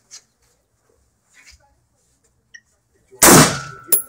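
A single rifle shot about three seconds in, dying away over half a second, followed by a thin ringing tone and a sharp click just before the end.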